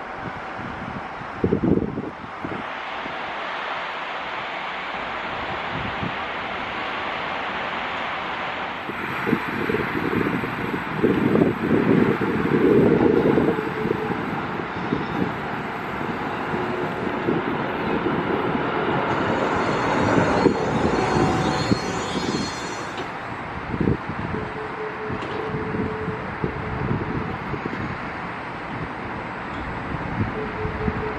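Düwag N8C articulated tram running in along the track and slowing at the platform. Its wheels rumble on the rails, loudest about halfway through, with a high electric whine from its thyristor traction control that shifts higher in pitch as it brakes. Wind buffets the microphone.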